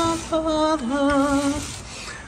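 A voice singing three long held notes, the last one with a wavering vibrato, then fading near the end.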